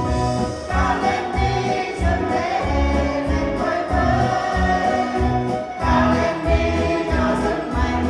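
A women's choir singing together into microphones, backed by an accompaniment with a steady, regular bass beat.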